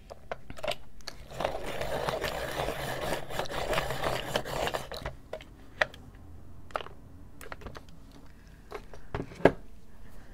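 A Derwent Lightfast black coloured pencil being sharpened: a dense scraping grind for about four seconds, then a few separate clicks and taps.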